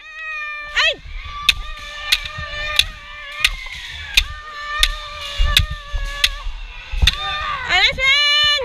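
Bamboo shinai striking kendo armour in a steady series, about nine sharp cracks a little under a second apart. Long held kiai shouts that bend in pitch run over the strikes.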